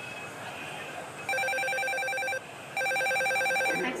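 A telephone ringing: two trilling rings, each about a second long with a short gap between, over a steady background noise.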